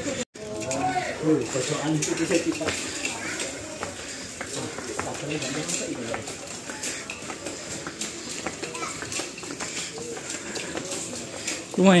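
Passengers' voices and chatter filling a ship's passenger deck, clearest in the first few seconds and then lower and steady, with scattered light clicks and knocks throughout.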